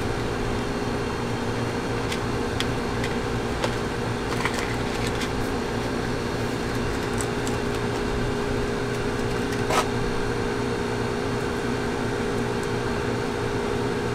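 Steady mechanical hum of machinery running, with a few faint light clicks and crinkles as small tackle and a plastic packet are handled.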